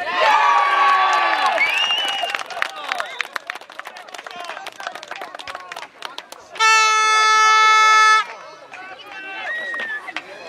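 People shouting and cheering as a goal goes in, loudest in the first couple of seconds, then scattered voices. About six and a half seconds in, a single steady horn blast lasting about a second and a half.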